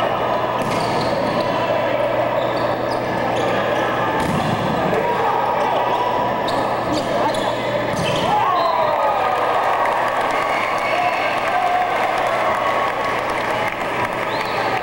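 Indoor volleyball rally: the ball is struck with several sharp smacks, and sneakers squeak on the hardwood court under steady crowd chatter.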